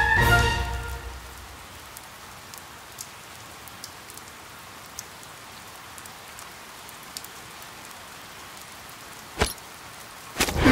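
Steady rain hissing, with scattered faint drip ticks, after background music fades out in the first second. A single sharp knock comes shortly before the end.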